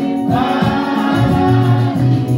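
Gospel singing by a group of voices with instrumental accompaniment; a low bass line comes in about a second in and repeats.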